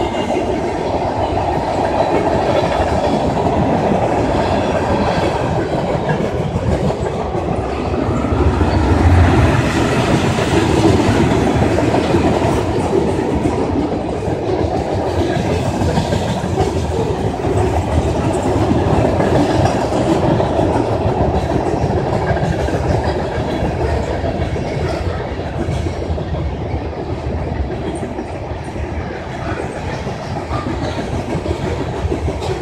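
Freight cars of a passing freight train, covered hoppers and tank cars, with their steel wheels rolling on the rails in a steady loud rumble. It swells a little about nine seconds in and eases slightly near the end.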